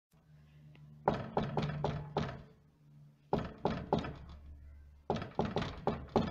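Rapid knocking in three quick runs of four or five knocks each, over a low steady hum.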